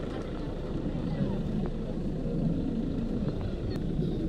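Voices talking over a steady low rumble.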